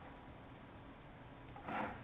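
Faint steady hiss of a voice-over microphone in a quiet room, with one short soft noise near the end.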